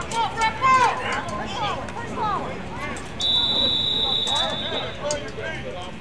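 Voices shouting and cheering at a football game. About three seconds in, a referee's whistle blows one steady blast of nearly two seconds, blown to end the play after the tackle.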